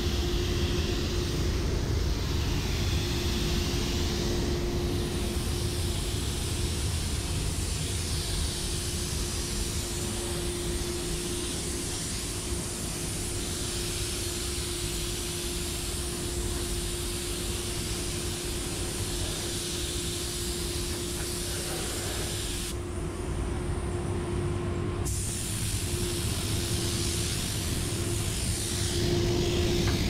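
Gravity-feed paint spray gun hissing steadily as it lays paint onto a motorcycle fender, over a constant low hum and rumble. The hiss stops for a couple of seconds about three quarters of the way through, then resumes.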